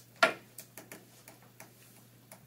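A sharp click about a quarter second in, then light, irregular ticks and clicks over a faint steady hum.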